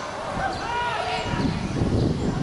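Distant shouted calls from football players on the pitch, echoing in a near-empty stadium, with a low noise building about a second and a half in.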